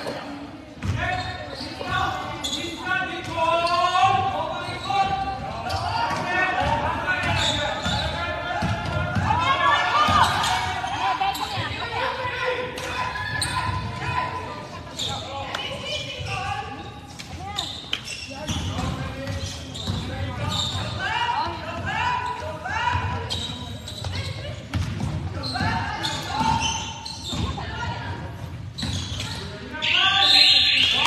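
A basketball being dribbled and bounced on a wooden sports-hall floor during play, echoing in the large hall, amid players' and spectators' voices and calls.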